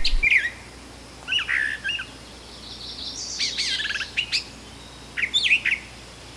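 Brown thrasher singing: about four short bursts of varied chirped and whistled notes, each under a second long, separated by pauses.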